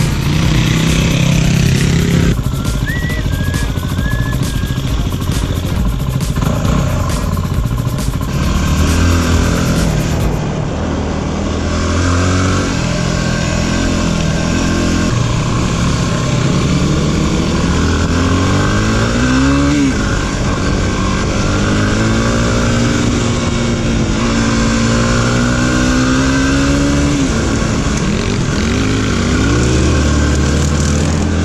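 Dirt motorcycles ride past on a gravel road. Then comes the onboard sound of a Yamaha WR250R's single-cylinder engine, rising in pitch as it accelerates and dropping at each gear change, several times over, with wind and tyre noise.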